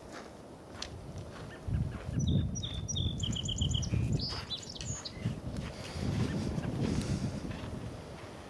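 A small bird singing a quick series of repeated whistled notes, ending with a few higher notes about five seconds in. Under it runs a loud, uneven low rumble that starts a little under two seconds in.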